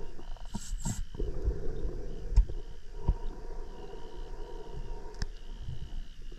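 Underwater sound of a scuba cave dive: a steady low rumbling noise with scattered clicks and knocks of diving gear. A faint high whistle comes and goes a few times.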